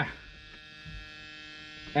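A low, steady electrical hum that keeps one pitch throughout, with several even overtones.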